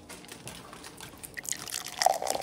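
Dry cake mix poured from a plastic bag into a stainless steel mixing bowl: faint rustling, then a patter of small ticks and a soft hiss that grows near the end as the mix starts to run.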